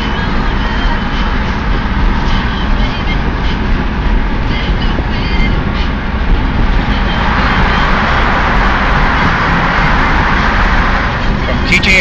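Road and engine noise inside a small Smart car's cabin at highway speed, a steady rumble. A brighter hiss rises about seven seconds in and fades near the end.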